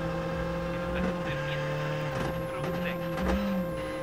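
Engine of a Skoda Fabia R5 rally car heard from inside the cabin, running hard through a tight corner with small steps in pitch as it shifts and a thin high whine over it.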